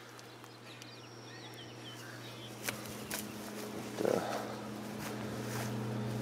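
A steady low hum that grows louder from about halfway through, with faint short high chirps in the first half and a single click partway in.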